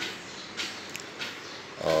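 A pause in a man's speech with faint room noise and a few faint short sounds, then his voice starting again near the end.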